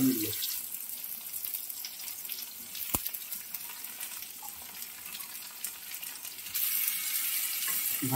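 Bitter gourd and potato pieces sizzling in hot oil in a wok, a steady hiss that grows louder near the end. A single sharp click about three seconds in.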